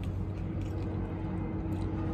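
Steady low hum of a car idling, heard from inside its cabin.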